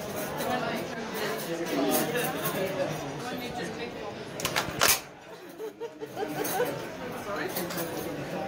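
A Christmas cracker pulled apart between two people, going off with one sharp snap about five seconds in, over the voices and chatter of diners.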